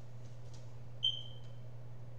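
A single short high-pitched beep about halfway through, fading out quickly, over a steady low hum. Faint rustling of a paper sale flyer being handled comes before it.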